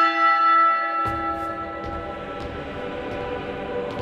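A single deep church-bell toll rings out and slowly fades, used as a segment stinger. About a second in, a low rumbling ambient drone comes in under it.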